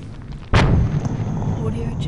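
Artillery-burst explosion: the low rumble of one blast dies away, then about half a second in a new blast hits with a sharp crack and rolls on as a long low rumble.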